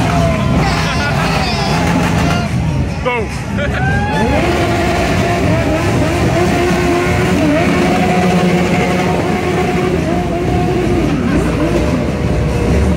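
Motorcycle engines revving hard, with a quick sweep up and down about three seconds in, then held at high revs for several seconds.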